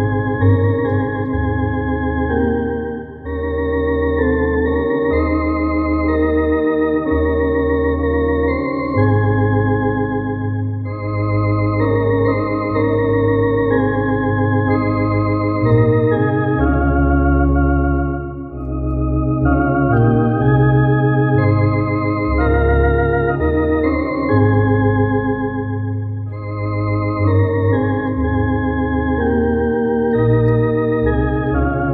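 TOKAI T-1 clonewheel electronic organ, a Hammond-style tonewheel clone, playing a hymn in sustained, slowly changing chords with wavering tones over deep bass notes. The music dips briefly at phrase breaks about 3 seconds in, after about 18 seconds, and again near 26 seconds.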